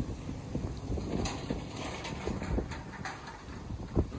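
Wind noise on the microphone, a steady low rumble with a few faint clicks scattered through it.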